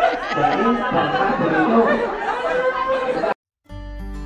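Several people in a room talking over one another. The chatter cuts off abruptly a little over three seconds in, and after a brief silence guitar music starts near the end.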